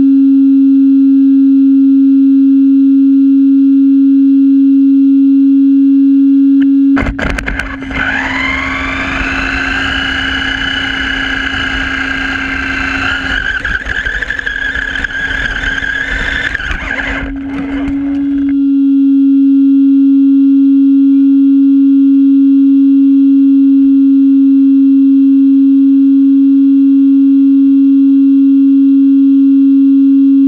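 A radio-controlled car's motor drives the car for about eleven seconds, starting about seven seconds in. Its whine rises quickly in pitch and then holds, over the rattle and rumble of the chassis and tyres on the ground. Before and after the drive, a loud steady electronic tone is heard.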